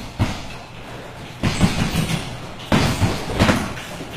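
Gloved punches landing during sparring: irregular sharp thuds and slaps, several hits a second or so apart.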